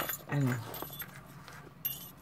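Light handling sounds of a handmade junk journal: a sharp click at the start, faint rustling, and a small clink near the end as its metal binding ring is worked loose. A short spoken word comes about half a second in.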